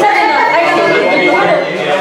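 Several people talking at once in a room: steady, overlapping group chatter.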